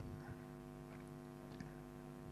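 A quiet pause: a faint steady electrical hum, with a couple of tiny clicks about one and one and a half seconds in.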